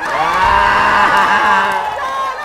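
A small group of game-show contestants cheering and shrieking together, many voices at once, breaking out suddenly as their team is declared the winner of the round.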